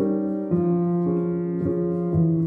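Solo piano playing a slow, free improvisation: held notes ringing on, with a new chord struck about half a second in and single notes following.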